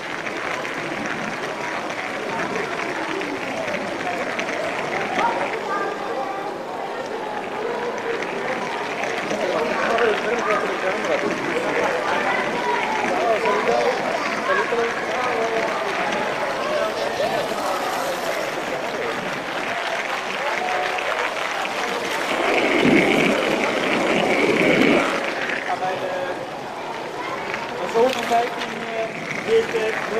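Indistinct chatter of a crowd, many voices at once with no words standing out, swelling louder for a few seconds about three-quarters of the way through, with a couple of sharp knocks near the end.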